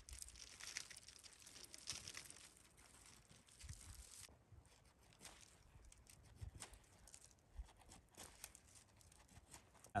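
Faint, irregular scraping and small ticks of a knife blade whittling a thin wooden stick, a little busier in the first few seconds.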